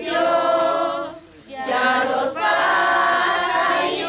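A group of children and women singing a devotional song together, unaccompanied, with a brief pause for breath about a second in.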